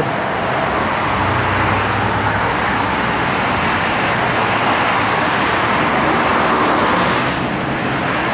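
Steady rushing road-traffic noise, with no clear engine note, swelling slightly around the middle.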